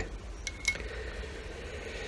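Quiet room tone with two small metallic clicks about half a second in, from a small brass miner's lamp being turned in the hands.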